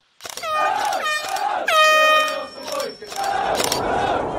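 Three air-horn blasts, each dipping in pitch as it starts and then holding, the third the longest, followed by a steady rushing noise.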